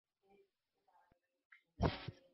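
A pause in speech: near silence for most of it, then a short burst of the speaker's voice near the end as she starts talking again.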